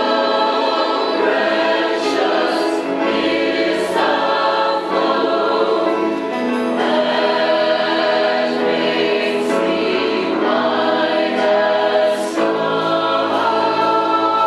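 Mixed church choir of men's and women's voices singing an anthem in parts, in held chords that change every second or two.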